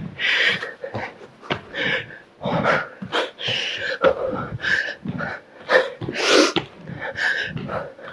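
A woman breathing hard while doing burpees: quick, forceful puffs of breath every half second to a second, with a few short thuds from her sneakers landing on the exercise mat.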